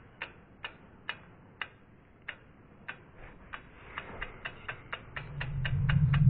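Sound-designed logo sting: a run of sharp ticks, about two a second at first and speeding up toward the end, joined by a low swell that rises from about four and a half seconds in.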